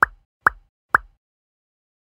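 Three short pop sound effects about half a second apart, the kind of editing 'pop' added as on-screen text appears.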